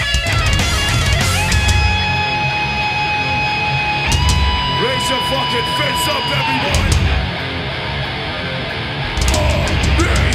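Live hardcore band playing loud, with distorted electric guitars and drums. Long held guitar notes ring out, stepping up in pitch partway through. The band drops back briefly and comes in again at full volume near the end.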